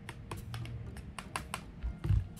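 Light, irregular plastic clicks and taps from a plastic funnel being handled and lifted off a plastic bottle filled with granular fish-food pellets, about a dozen in two seconds.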